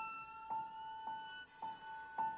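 Violin and piano playing without voice. The violin holds a long high note that edges slightly upward, while the piano repeats one high note about twice a second.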